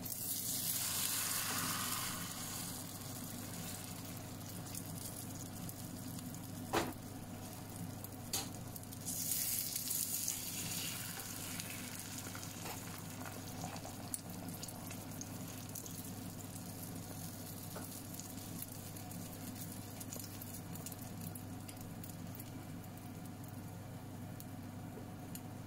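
Egg frying in a pan with a steady sizzle. A slotted plastic spatula scrapes and pushes under the egg in two louder spells, at the start and about nine seconds in, with two sharp taps about a second and a half apart just before the second spell.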